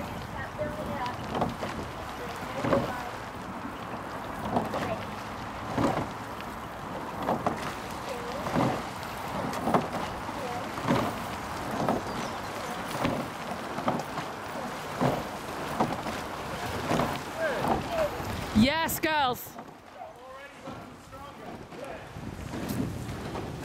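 A rowing eight racing past, with short bursts of sound in a steady rhythm about every second and a half, in time with the strokes, over wind on the microphone. A loud pitched call comes near the end, after which it goes quieter.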